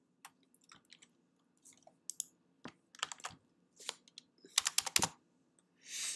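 Computer keyboard keys being typed: scattered, uneven clicks, with a quick run of several keystrokes about four and a half seconds in.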